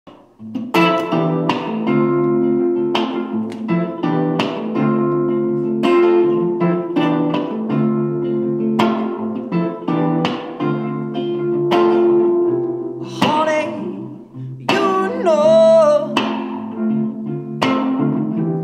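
Instrumental intro of an indie soul song: a hollow-body electric guitar plays ringing chords about every second or so over sustained keyboard notes, starting just under a second in. Near the end a held note wavers in pitch.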